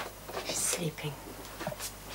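A person's short, breathy sigh about half a second in.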